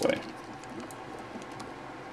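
Faint light clicking and rubbing of a plastic Transformers action figure's parts as a wheel-and-arm section is rotated by hand, over a steady low hiss.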